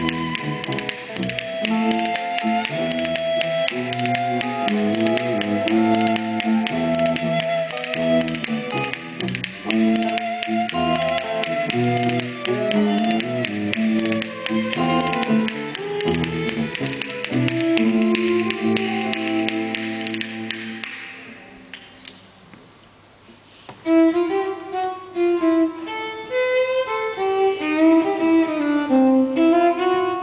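Live ensemble music led by bowed strings, violin and cello, over a busy high rattling layer. About two-thirds of the way through it fades almost away. A few seconds later it comes back as a lighter passage of short, separate notes.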